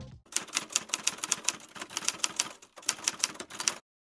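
Typing sound effect: a quick, even run of typewriter-like key clacks that pauses briefly about three-quarters of the way through and then cuts off abruptly just before the end.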